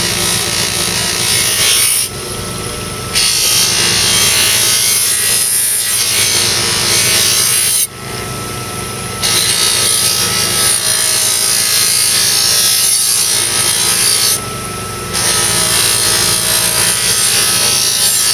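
Baldor electric buffer motor running steadily while a knife blade is pressed against its spinning cloth buffing wheel, a loud hissing rub that eases three times for about a second as the blade is lifted between passes. The buffing is taking dishwasher stains off the blade.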